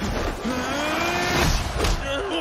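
A long drawn-out yell, held for about a second and rising slightly in pitch, over a steady din of arena crowd noise, with a sharp hit near the end.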